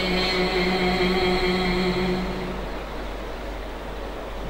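A man's voice holding one long sung note at the end of a phrase of unaccompanied Sufi kalam recitation, fading out a little under three seconds in and leaving a low steady background hum.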